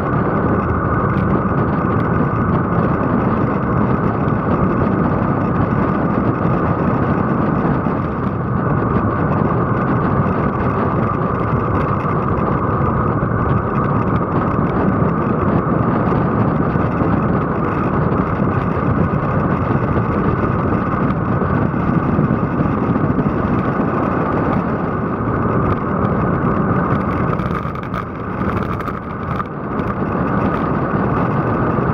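Loud, steady wind rush and road noise on the microphone of a camera mounted on a road bike moving at speed.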